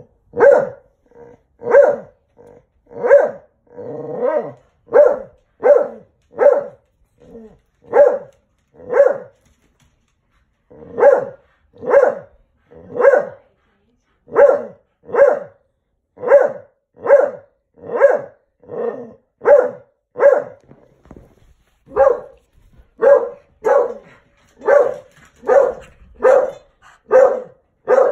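A dog barking over and over, loud single barks about once a second with one short break partway through, in protest at a woman petting another dog.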